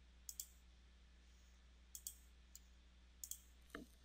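Faint computer mouse clicks, several in quick pairs, over a low steady hum.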